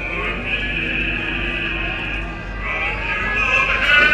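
A singer's voice over the speedway loudspeakers, holding long wavering notes that swell louder near the end, over the murmur of a large crowd.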